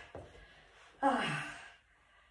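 A woman's voiced sigh, falling in pitch, about a second in and lasting under a second.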